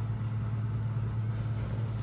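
A steady low hum over a light hiss, unchanging, with no distinct knocks or clicks.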